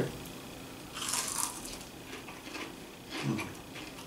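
Crunching bites and chewing of lightly breaded tempura shrimp, the loudest crunch about a second in.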